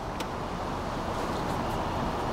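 Chevrolet Impala engine idling at about 500 rpm in park, a steady low rumble, with one brief click just after the start.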